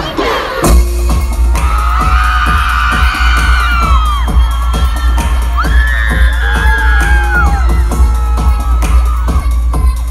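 Live pop concert music over the arena sound system: a heavy, steady bass beat after a downward sweep in the first second, with long held tones above it, and a crowd cheering and screaming.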